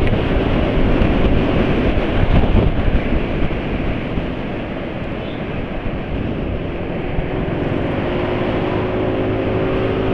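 A scooter ridden at road speed: wind rushing over the microphone together with engine and tyre noise, dipping a little around the middle as it slows, with a faint steady engine hum towards the end.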